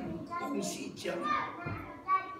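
A man preaching in a church hall: continuous speech with short breaks between phrases.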